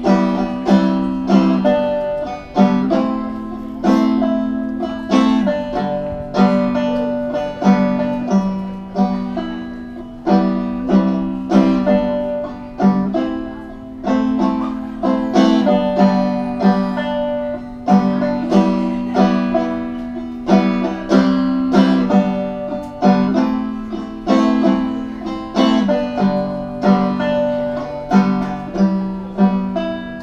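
Five-string banjo played solo, picked chords coming in a steady rhythm, each one ringing out and fading.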